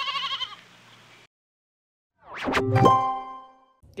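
Intro sound effects: a short, wavering sheep bleat, then after a pause a rising swoosh into a ringing musical chime that fades out.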